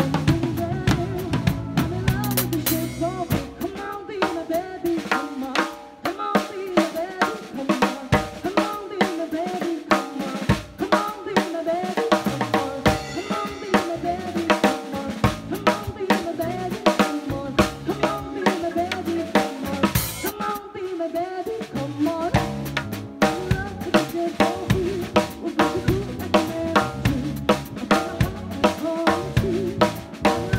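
Drum kit played in a steady, busy beat along to a recorded pop song: rapid drum strikes and cymbal hits over the song's bass and melody.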